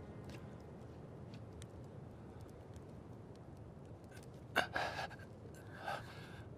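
A sharp gasping breath a little after four seconds in, then a second, softer breath near the end, over faint low background noise.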